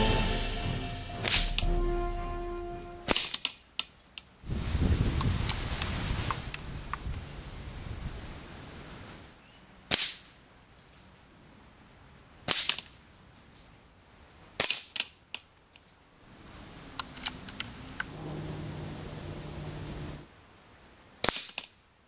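Daystate Huntsman Classic .177 pre-charged air rifle firing a series of shots, each a sharp, short crack, some followed a fraction of a second later by a second click. Background music fades out in the first few seconds.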